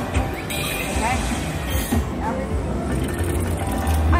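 Huff N' More Puff slot machine playing its free-games bonus music and chiming effects, with scattered short tones, over a steady low casino hum and background voices.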